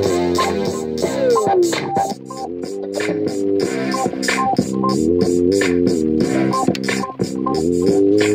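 Hip hop jam: a drum-machine beat (BKE Tech Beat Thang) with steady, evenly spaced hits under held synthesizer chords from a microKorg. A falling pitch glide sweeps down about a second and a half in.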